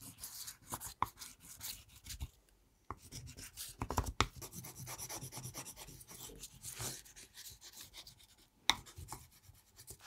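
Sheet of Japanese kozo paper being burnished by hand onto an inked linoleum block with a burnishing tool: quick, scratchy rubbing strokes as the ink is transferred to the paper. The rubbing breaks off briefly about two seconds in, and there is a sharp tap near the end.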